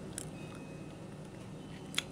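Quiet room tone: a steady faint hiss, broken by a faint click just after the start and a sharper click at the very end.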